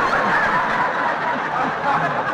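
A studio audience laughing loudly at a punchline, on an old radio broadcast recording. The laughter broke out all at once just before and holds steady throughout.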